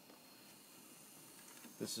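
Faint steady hiss of room tone, with a spoken word starting near the end.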